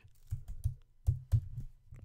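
Typing on a computer keyboard: a quick, irregular run of keystrokes as a line of code is entered.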